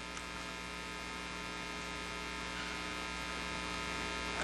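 Steady electrical mains hum with many overtones.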